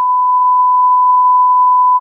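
Television test-card reference tone: a single steady, pure electronic beep held at one pitch, cutting off abruptly at the very end.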